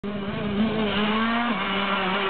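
Motocross dirt bike engine running at high revs as the bike comes closer, its pitch climbing slowly and then dropping suddenly about one and a half seconds in.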